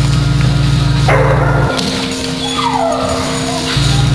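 A dog yips about a second in and gives a short whine falling in pitch near the middle, over droning background music that thins to a single held tone for a couple of seconds.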